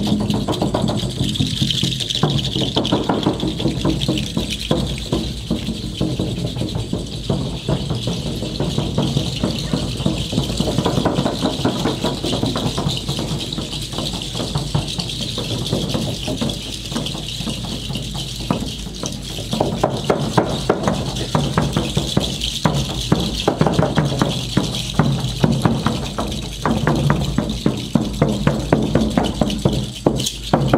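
Haida ceremonial song: rattles shaken fast and steadily together with drum beats and voices. The beats grow sharper and stronger about two thirds of the way through.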